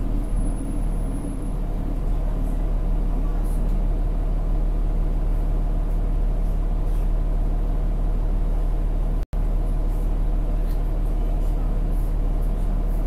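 Cummins ISL9 diesel engine and drivetrain of a 2010 New Flyer D40LF city bus, heard from inside the cabin at floor level, running with a steady low hum. A higher hum drops away within the first two seconds, and the sound cuts out for an instant about nine seconds in.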